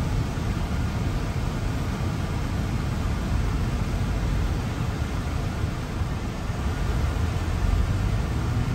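Steady road noise inside a moving car's cabin: a low rumble of tyres and engine with a faint hiss of air, unchanging throughout.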